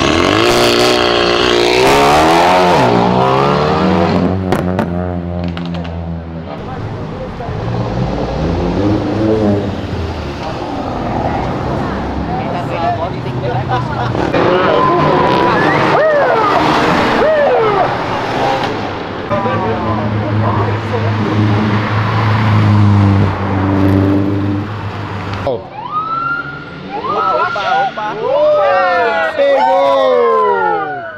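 Mercedes-AMG A35's turbocharged four-cylinder accelerating hard away, its pitch climbing and dropping with each gear change, followed by more cars revving and passing. About four seconds before the end a siren starts wailing, rising and falling.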